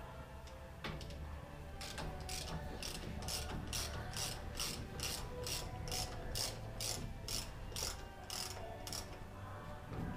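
Ratchet spanner clicking in a steady rhythm, about three clicks a second, as the clamp bolts holding a bus brake cylinder are worked loose.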